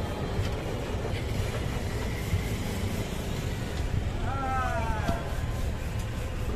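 Roadside street ambience: a steady low rumble of passing traffic, with a short voice call about four seconds in.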